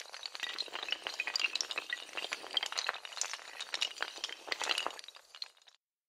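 Sound effect of a long run of dominoes or small tiles toppling: a dense, rapid clatter of small hard clicks that thins out and stops abruptly near the end.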